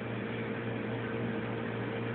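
Harbor Freight ultrasonic cleaner running, a steady buzzing hum over a hiss from its bath of water and Mean Green degreaser.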